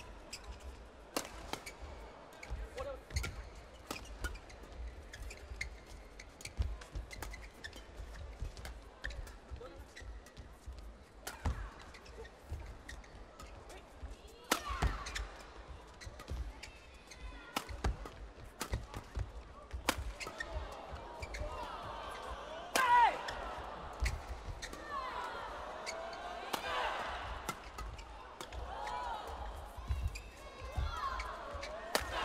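Badminton rackets striking a shuttlecock in a long doubles rally, sharp cracks at irregular intervals about a second apart. From about twenty seconds in, squeaking shoes and crowd noise grow louder, with the loudest hit just before the halfway point of that stretch.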